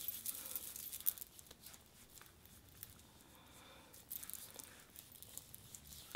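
Faint rustling and a few light clicks as hands handle a face-oil dropper bottle and work the oil onto the fingers, busier near the start and again about four seconds in.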